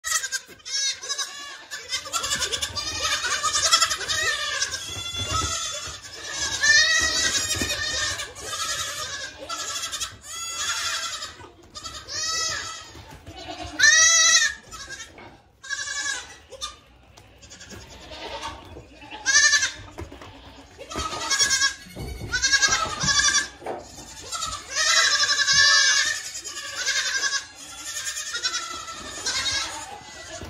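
Many goats bleating at once, one call after another, with loud overlapping cries that rise and fall in pitch and come every second or so throughout.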